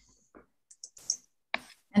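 Mostly quiet pause with a few faint, short clicks and soft noises scattered through it.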